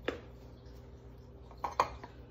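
A metal tablespoon measuring spoon clicks once as it scoops from a plastic tub of cornstarch. Near the end it clinks twice against a metal muffin tin as the cornstarch is tipped in. A faint steady hum runs underneath.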